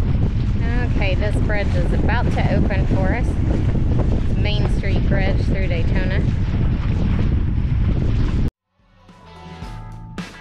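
Heavy wind rumble buffeting the microphone on the bow of a moving boat, with a person's voice talking indistinctly under it in two stretches; it cuts off abruptly near the end and music fades in.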